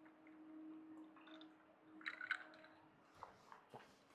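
Near silence: faint room tone with a low steady hum for about three seconds, and a few faint small clicks about two seconds in as the syringe and vial are handled.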